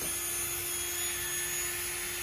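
Cordless drill run with no load at a steady speed, its motor giving an even whine.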